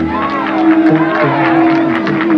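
Male a cappella group singing doo-wop in close harmony, with no instruments: one voice holds a long steady note while other voices glide above it and a bass voice steps underneath.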